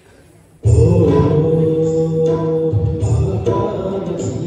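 Live accompaniment for an Indian film song starts abruptly about half a second in: sustained keyboard notes over a tabla beat.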